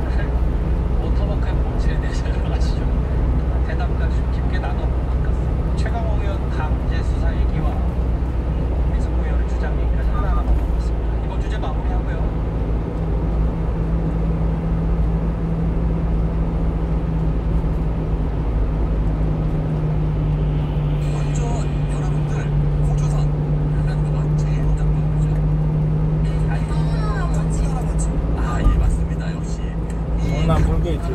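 Constant road and engine rumble inside a small truck's cab at highway speed. A steady low engine hum comes up about twelve seconds in and drops away near the end, and a radio voice talks faintly underneath.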